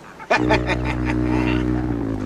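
A man laughing over a sustained low synthesizer chord from the soundtrack, which comes in suddenly about a third of a second in.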